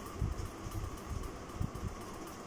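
Faint scratching of a graphite pencil drawing a thin line on paper, over a steady background hiss, with a few soft low bumps.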